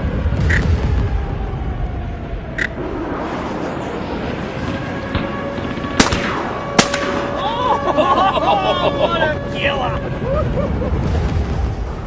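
Two shotgun shots at flying ducks, a little under a second apart, about halfway through.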